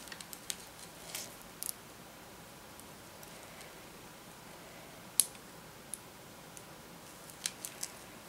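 Faint scattered clicks and light rustling of hand cross-stitching: a needle pushed through stiff cross-stitch fabric and thread drawn after it, with the sharpest click about five seconds in and a quick run of clicks near the end.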